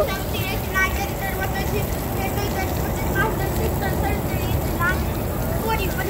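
Faint, distant voices over a steady low rumble.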